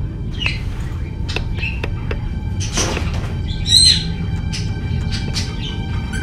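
Pet parrot giving scattered short chirps and squawks, the loudest a sharp squawk about four seconds in, over a low, steady music drone.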